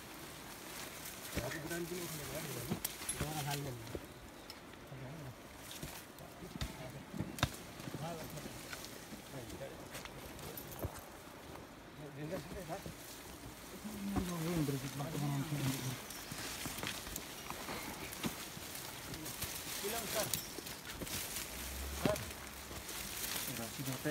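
Several people pushing through dense brush on a steep slope: crackling of branches and leaves and scattered footsteps, with low voices talking in two short stretches.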